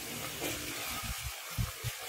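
Steady hiss of background noise, with a few soft low thumps in the second half, in time with a small cardboard box being handled.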